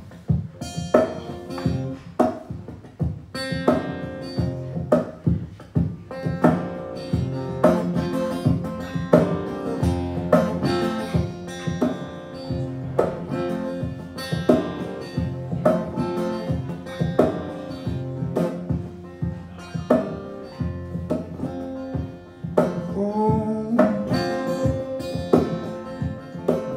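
Acoustic guitar played lap-style, flat across the knees: an instrumental intro of plucked notes that ring on. Near the end there are sliding notes that glide in pitch.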